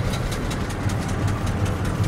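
Flathead V8 engine of a vintage Ford F-1 pickup idling steadily, with an even low throb and rapid regular ticking.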